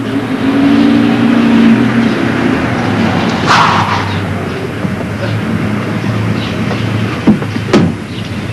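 Taxi engine running with road traffic noise, under a steady low hum. A low held tone sounds in the first couple of seconds, and there are two sharp clicks near the end.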